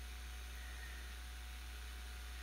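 Steady low electrical hum with a faint, steady high whine and hiss from powered bench electronics under load.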